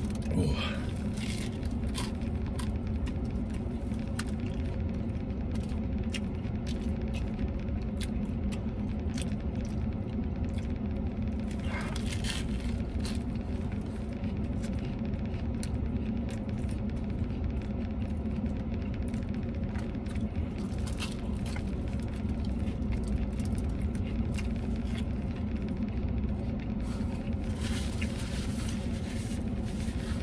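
Steady low hum of an idling vehicle with its air conditioning running, heard inside the cab, with scattered small clicks and rustles over it.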